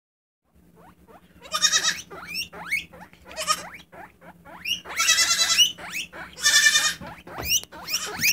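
A baby goat bleats four times, each a loud, wavering call about half a second long. A guinea pig's short, high rising squeaks chatter in the gaps between the bleats.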